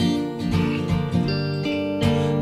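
An acoustic guitar and a hollow-body electric guitar playing together, plucked notes ringing over sustained chords, in an instrumental gap between sung lines.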